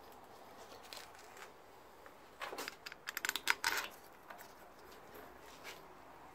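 Light clicks and clinks of steel bolts and engine parts being handled, bunched into a quick run of sharp taps over about a second and a half near the middle, with a few lone faint clicks before and after.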